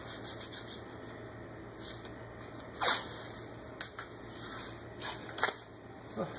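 White athletic tape being pulled off the roll and rubbed down by hand onto an ankle: soft rubbing and scraping, with one brief sharp peeling sound, falling in pitch, about three seconds in.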